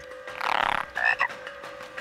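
Animated squirrel toad croaking: one rippling croak about half a second in, then a shorter call about a second in.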